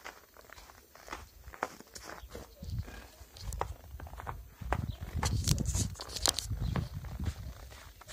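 Bare feet stepping and crunching in snow, irregular short crunches. In the second half a louder low rumble on the microphone runs under the steps.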